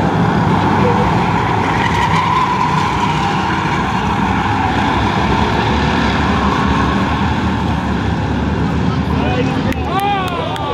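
A pack of short-track stock cars running together around an oval, their engines giving a loud, steady, continuous roar.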